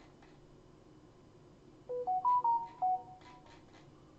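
A short electronic notification jingle: about a second of clean beeps stepping up and then down in pitch, starting about two seconds in. A few faint clicks follow it.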